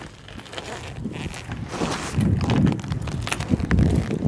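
Wind buffeting an uncovered camera microphone, a low gusty rumble that grows much louder about halfway through.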